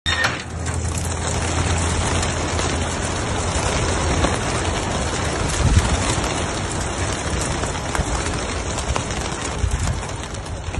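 Wings of a large flock of racing pigeons beating together as they burst out of their release crates and take off, a dense, continuous flutter.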